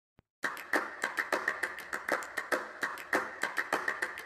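A rapid, irregular run of sharp clicks or taps, about four or five a second, starting about half a second in.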